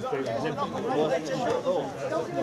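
Indistinct chatter of several men talking over one another close by, no words clearly made out.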